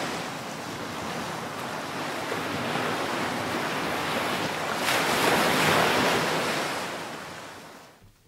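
A steady rushing noise that swells about five seconds in, then fades away to nothing near the end.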